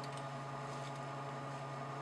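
Room tone: a steady low hum with a faint hiss and no distinct events.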